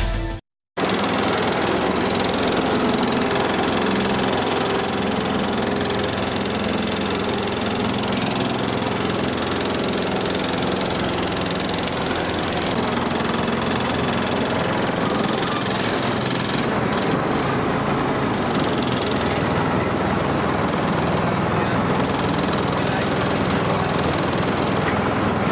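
Boat engine running steadily at an even level.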